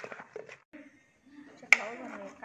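Sharp clicks of a spoon and wooden pestle knocking against a mortar as salad is mixed. The loudest click comes near the end and is followed by a person's voice.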